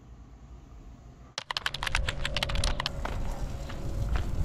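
A faint low hum, then about a second and a half in a quick run of sharp clicks like typing on a keyboard, roughly ten a second for over a second, giving way to steady background noise.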